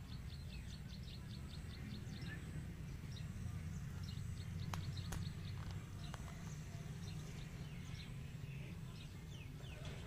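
Outdoor ambience of birds calling over a steady low rumble: a quick run of high ticking calls in the first two seconds, then scattered short chirps and a couple of sharp clicks.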